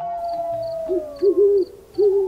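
Owl hooting: about three short hoots in quick succession from about a second in, over a long held tone that slowly falls in pitch.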